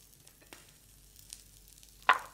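Faint sizzling of corn kernels browning in a small pan over a gas flame, with a couple of faint ticks. The kernels have turned golden.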